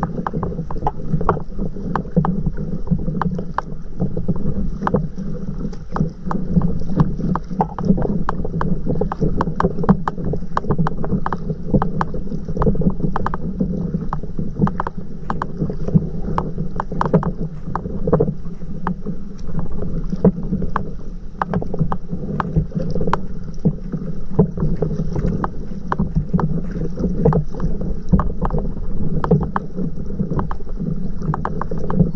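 Water splashing and lapping against a moving stand-up paddleboard, a constant irregular patter of small splashes, with wind rumbling on the microphone.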